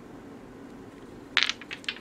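Small hand-held stones clicking against each other as they are put down: a quick run of sharp clicks about a second and a half in, after low room tone.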